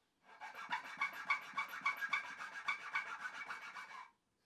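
A small needle file rasps across the top edge of a wooden block, cutting a groove into it. The strokes are quick and back-and-forth, several a second. The filing starts just after the beginning and stops abruptly near the end.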